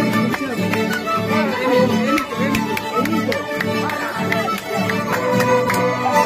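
Live Andean folk band playing: a violin carries the melody over strummed mandolin, accordion and guitar, with a steady rhythmic strum.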